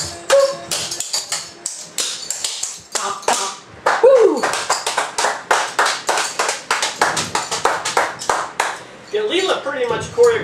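Clogging shoe taps clicking on a hard floor as the routine ends. About four seconds in, a short falling whoop, then steady hand clapping at about four claps a second.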